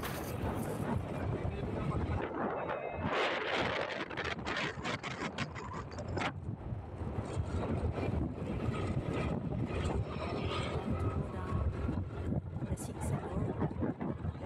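Wind buffeting the microphone of a moving motorcycle, in gusts, over a steady rush of road and engine noise.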